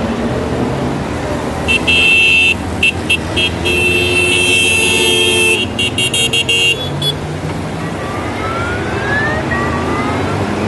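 Parade of Honda Gold Wing touring motorcycles rolling past with engines running, their horns tooting: a string of short blasts starting about two seconds in, a longer held blast around the middle, then more short toots that stop about seven seconds in. A rising whine near the end.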